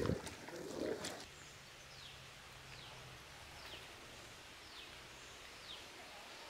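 A bird calling faintly in the background, a run of five or six short high whistles, each falling in pitch, about one a second. A soft knock and a brief low scrape come in the first second.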